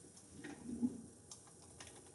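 Computer keyboard being typed on: a scatter of light, irregular key clicks.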